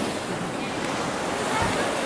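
Steady wash of sea surf mixed with wind blowing across the microphone, with a short low wind buffet near the end.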